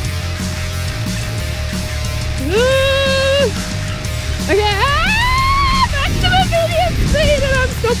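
Heavy metal soundtrack music with electric guitar, with a long held note about two and a half seconds in and a rising, bending one about a second later.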